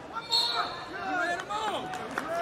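Coaches and spectators shouting in a gym during a wrestling bout, with a thud of the wrestlers on the mat.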